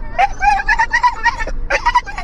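A dog making a string of short warbling, whining calls that wobble up and down in pitch, the kind of vocal 'talking' some dogs do, with a brief break about one and a half seconds in.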